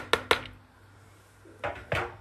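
A spoon or utensil knocking against a cooking pot as chopped cabbage is tipped into the broth: a quick run of sharp knocks at the start, then two more near the end.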